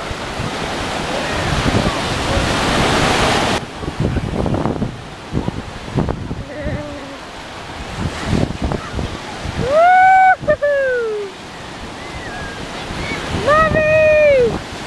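Ocean surf washing around waders, with wind on the microphone, the noise building for the first few seconds and then cutting off suddenly. A person's long shouted call, its pitch rising then falling, rings out about ten seconds in, and another comes near the end.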